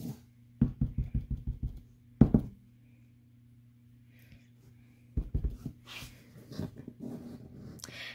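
Clear acrylic stamp block tapped repeatedly onto a foam ink pad to ink it: a quick run of soft pats about a second in, a sharper knock a little after two seconds, then another run of pats later on. A faint steady low hum sits underneath.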